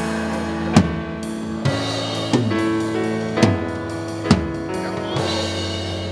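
Live church band music: held keyboard chords with drum-kit hits roughly once a second.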